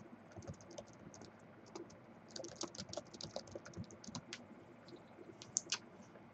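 Faint, irregular clicking of a computer keyboard being typed on, busiest through the middle, with a couple of sharper clicks near the end.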